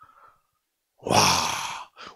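A man's breathy, sighing exclamation "wah" (Korean for "wow") close into a handheld microphone, lasting about a second and starting about halfway through.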